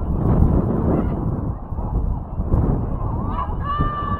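Low rumble of wind on the microphone over an open sports field, with calls carrying across it. About three seconds in comes a high, held call with several overtones.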